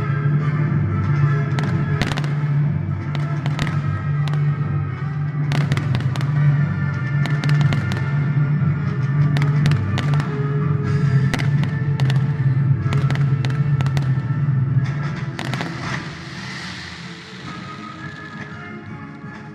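Fireworks going off in quick succession, many sharp bangs and crackles, with music playing under them. Near the end the bangs stop and give way to a softer crackling hiss.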